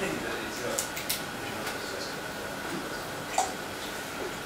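A few light clinks and clicks of metal bar tools, jigger against shaker tin, as a shot of cream is measured into a cocktail shaker. The sharpest clink comes about three and a half seconds in.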